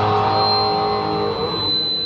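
Live band music amplified through a PA system, heard from the crowd: a held chord that stops about a second and a half in and dies away.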